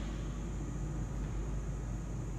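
Steady low rumble and hiss of background noise, with a faint steady high whine above it.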